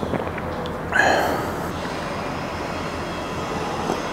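Steady low rumbling background noise, with a brief louder sound about a second in.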